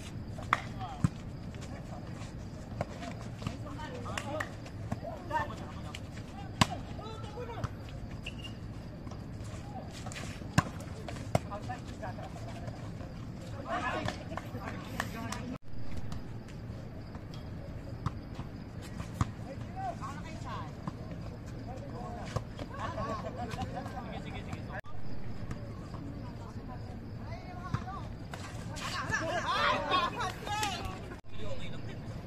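Volleyball rally: sharp single slaps of hands and arms striking the ball every few seconds, with players' shouts and calls between them.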